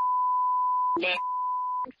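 A steady 1 kHz bleep tone laid over a woman's recorded speech, masking her words mid-sentence; about a second in a brief fragment of her voice breaks through before the tone resumes and stops just before the end.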